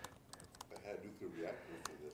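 Faint, scattered clicks of laptop keys being typed.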